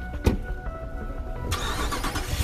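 Background music with a few held notes, then about halfway through a sudden burst of noise as a pickup truck's engine starts.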